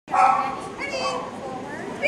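Background voices of people talking in a large indoor hall, some of them high-pitched like a child's.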